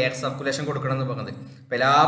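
A man's voice talking, with a short pause near the end before he carries on.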